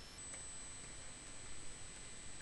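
Quiet room tone: an even hiss with a steady high-pitched whine running through it, and a few faint computer-keyboard keystrokes.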